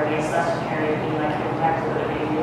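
Indistinct speech: a person talking in the room, the words not clear enough to make out.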